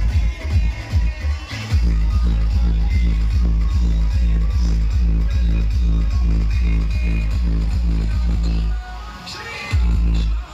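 Loud electronic dance music with a heavy, steady bass beat, played through a DJ sound-system truck. The beat drops out for about a second near the end, then comes back.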